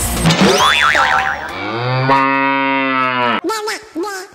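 A comic sound effect: music cuts off, a short wobbling whistle-like tone plays, then a cow moos once, a long call of about two seconds that falls slightly in pitch and ends abruptly.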